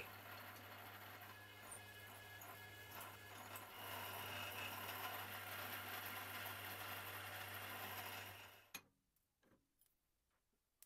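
Warco milling machine's spindle motor running with a clearance drill in the chuck, drilling a hole in a metal block: a faint steady hum that gets a little louder about four seconds in. It cuts off near the end, followed by a single click.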